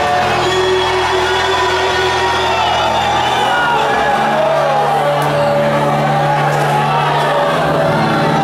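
Church worship music: long held chords that change about three and a half seconds in, under a congregation's many voices singing and calling out.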